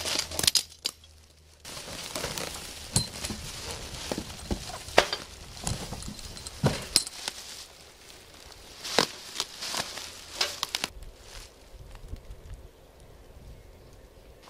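Plastic packing wrap and bubble wrap crinkling and rustling as wrapped items are unpacked from a cardboard box. Scattered sharp clicks and knocks run through it, with a brief lull about a second in and quieter handling after about eleven seconds.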